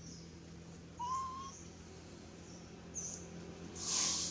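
Animal calls: one short whistle-like call about a second in that rises and then holds, and faint high chirps scattered around it, over a low steady hum. A brief hiss comes near the end.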